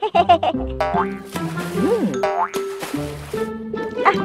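Cartoon background music with comic sound effects: springy pitch glides, one rising and falling like a boing, and a whooshing rush partway through.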